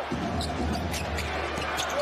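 Basketball dribbled on a hardwood court, a few bounces over steady arena background noise.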